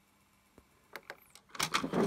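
The opened CD player's disc mechanism making a few faint clicks about half a second and a second in, after near silence, followed by louder sound near the end.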